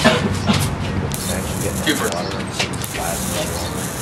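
Rechargeable plasma lighter arcing: a steady high-pitched electric hiss that switches on about a second in and keeps going.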